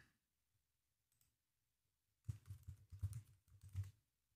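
Faint computer keyboard typing: a quick run of about eight keystrokes over a second and a half, starting about two seconds in.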